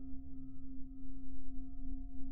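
Soft background music: a sustained ringing drone of a few steady tones over a low hum.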